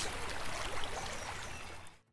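A steady rushing background noise with no distinct events, gradually fading out to silence near the end.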